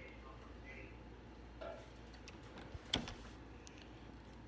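Faint room noise with one short, sharp click about three seconds in.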